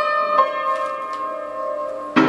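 Upright piano: two notes struck about half a second apart at the start, then left ringing and slowly dying away.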